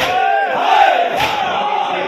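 A crowd of men chanting a noha together, with loud chest-beating (matam) strikes landing in unison about every 1.2 seconds, twice here.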